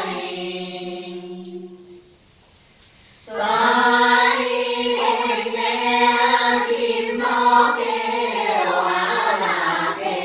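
A group singing a Quan họ folk song in unison, unaccompanied, with long held notes. A phrase dies away about two seconds in, and after a short pause the singing starts again just after three seconds.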